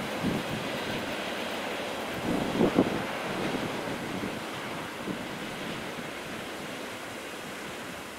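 Freight train of open wagons rolling away on the rails, a steady rumble that slowly fades, with a few clanks from the wagons about two and a half seconds in.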